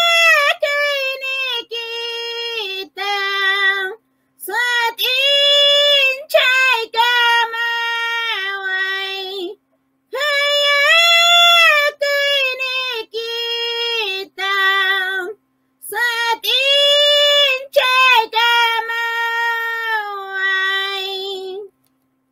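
A woman singing a cappella in a high-pitched voice, in four long phrases with short breaths between them, stopping shortly before the end.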